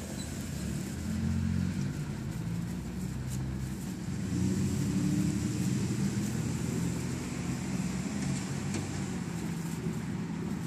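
Traffic on a street: a low engine and tyre rumble from passing cars, swelling about a second in and again for a few seconds near the middle.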